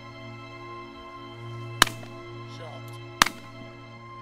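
Two shotgun shots, about a second and a half apart, over steady background music.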